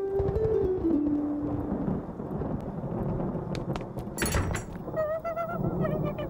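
Animated-show soundtrack: a few held music notes over a low rumble of thunder, then a sharp crash about four seconds in. Near the end a small dog whimpers in a wavering, high whine, frightened by the storm.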